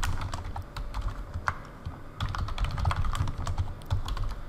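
Typing on a computer keyboard: a run of quick key clicks, with a short lull about two seconds in.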